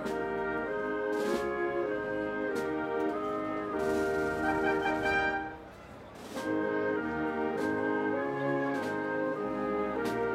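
Military brass band playing a slow processional march: sustained brass chords over a percussion stroke about every second and a quarter. The music briefly drops away a little past the middle before the band comes back in.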